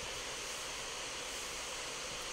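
Steady background hiss of room and microphone noise, with no distinct events.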